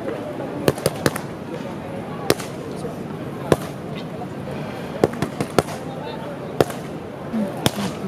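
Boxing gloves smacking focus mitts during pad work: about ten sharp punches at irregular intervals, some landing in quick pairs, over a steady murmur of voices.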